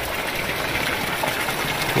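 Spring water pouring steadily from a bamboo pipe spout and splashing into a shallow pool below.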